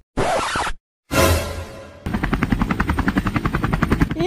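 Helicopter rotor sound effect, a fast steady chop of about nine beats a second, which starts about halfway in. It comes after two short whooshing noise bursts split by a moment of dead silence.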